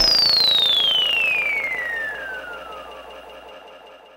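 A single high electronic tone gliding steadily downward in pitch as the beat cuts out, fading away over about three seconds.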